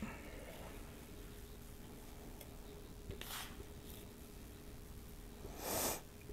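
Quiet kitchen with a faint steady hum, and two soft, brief swishes of cinnamon sugar sprinkled by hand over dough in a Bundt pan: a faint one about three seconds in and a louder one near the end.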